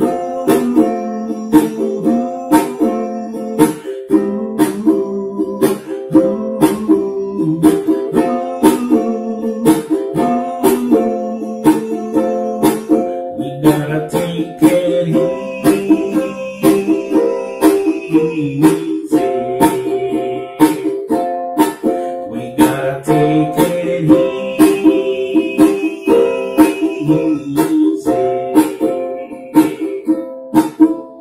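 Ukulele strummed in a steady, even rhythm, playing changing chords in an instrumental passage.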